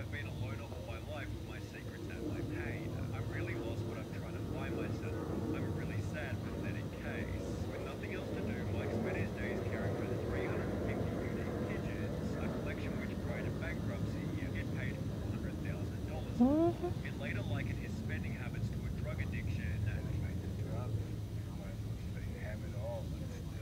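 Faint, muffled speech from a documentary played back on a phone, over a steady low hum. A short, loud rising squeak comes about three quarters of the way through.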